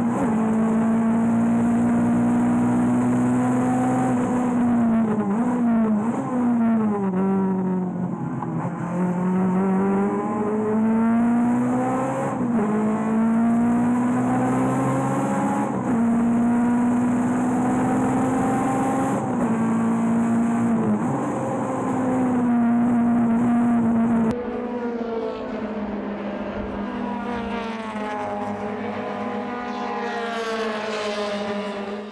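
Engine of a race-prepared Toyota AE86, heard from inside the cabin during a lap of a circuit. It holds high revs, and the pitch drops and climbs again several times through gear changes and braking. About 24 seconds in, the sound changes abruptly to a quieter car engine heard from beside the track.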